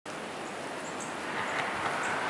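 Steady rush of strong wind blowing through bare trees, swelling a little about one and a half seconds in.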